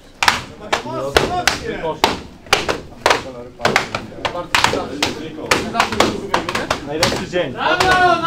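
Jiu-jitsu belts lashing a newly promoted student's back as he walks a belt-whipping gauntlet: a rapid run of sharp cracks, about three a second, with men's voices shouting among them.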